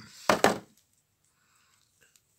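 Two sharp knocks close to the microphone, about a fifth of a second apart, from hands handling a hard object, then near silence.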